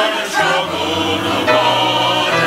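Church choir of mixed men's and women's voices singing together, moving to a new chord about a second and a half in.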